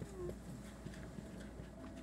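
Quiet room tone with a faint, brief murmur from a person just after the start.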